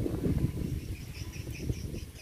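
A small bird chirping a quick series of about six short, high notes, roughly five a second, over a steady low rumble.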